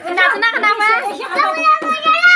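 A small boy's high voice singing a Kumaoni jagar, Pahadi folk song, in long held notes that waver in pitch.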